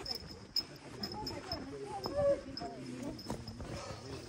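Footsteps on a dirt forest trail, with faint voices of walkers ahead in the middle of the stretch and a thin, high chirping repeated again and again.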